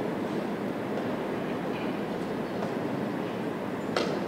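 Steady room noise of a busy tournament hall, a low even rumble without words, with a sharp click near the end.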